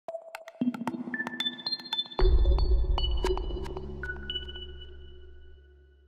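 A TV news channel's electronic logo sting: a quick run of ping-like blips and clicks, then a deep bass hit about two seconds in whose tones ring on and slowly fade out.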